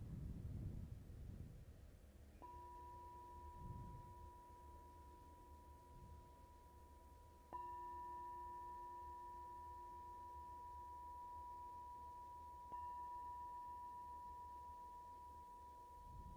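Small handheld metal singing bowl struck with a mallet three times, about five seconds apart; each strike rings on in a steady, pure, bell-like tone that slowly fades into the next.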